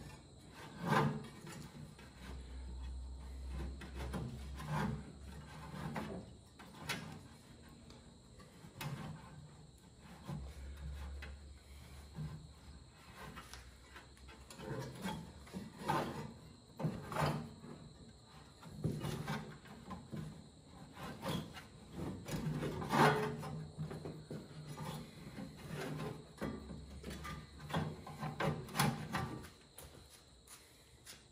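Old rubber drive belt being worked off the pulleys in a John Deere 2510 tractor's engine bay by hand: irregular rubbing and scraping, with scattered clicks and knocks against metal.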